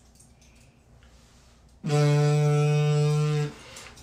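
After near silence, a steady buzzing drone, like electric hair clippers, is held at one pitch for about a second and a half, starting about two seconds in.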